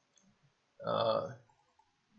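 A single short wordless vocal sound from a man, about two-thirds of a second long, near the middle, such as a hesitation sound or a clearing of the throat. Faint clicks come just before it.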